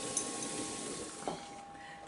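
Tomato sauce sizzling in a frying pan, a steady hiss that fades away over the second half, with a light clink about a second in.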